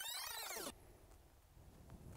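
A brief swoosh with a sweeping rise-and-fall in pitch, of the kind an editor lays over a cut. It stops suddenly under a second in and leaves quiet outdoor ambience with a few faint clicks.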